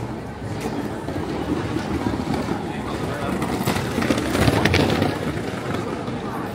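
Busy street ambience: passers-by talking over steady city background noise, swelling louder for a moment about four seconds in.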